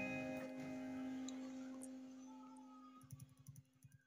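An electric guitar's final chord ringing out and slowly fading, one low note lasting longest, with a few soft clicks near the end.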